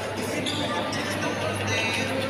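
Shopping-centre ambience: background music with people's voices, over a steady low hum.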